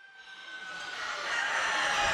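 Poultry show barn ambience fading in: a din of many caged chickens, with a rooster crowing.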